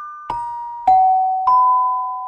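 A short title-card jingle of bell-like chime notes, struck one at a time about half a second apart and each left ringing. The notes step down in pitch, and the last one comes out a little higher.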